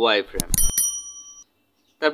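Subscribe-button animation sound effect: a few quick clicks followed by a bright bell-like notification ding that rings for about a second and fades.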